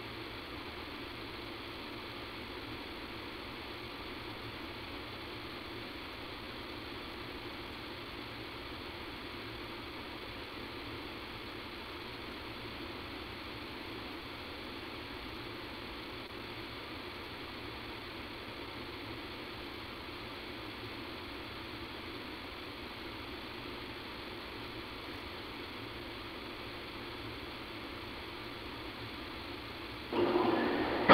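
Steady hiss and hum of line noise on a telephone conference-call recording, even and unchanging, with no voice over it; the recording's sound quality is poor.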